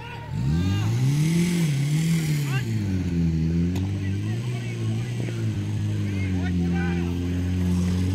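Portable fire pump engine revving up hard about half a second in, its pitch climbing and swinging up and down as the throttle is worked to drive water through the hose lines. Voices shout over it throughout.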